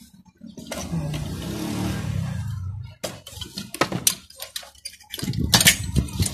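Sharp metallic clicks and clinks of a microwave magnetron's sheet-steel housing and aluminium cooling fins being worked apart by hand, coming thicker near the end. They follow a sustained noisy sound of about two seconds.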